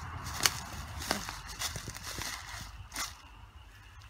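Footsteps on dry leaf litter, about five steps roughly half a second apart, with a low rumble underneath.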